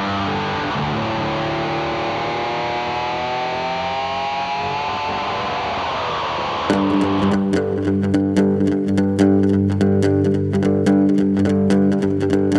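Instrumental prog-rock played on acoustic and electric guitars with bass. For the first half, guitars hold sustained notes that glide slowly in pitch. About seven seconds in, the music gets louder as a fast, even rhythmic pattern of short plucked or struck notes starts over steady low bass notes.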